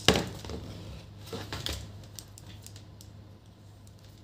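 Handling noise from a digital multimeter and its test leads being moved and set down on a laptop keyboard: a knock right at the start, then a few light clicks and taps that die away, over a steady low hum.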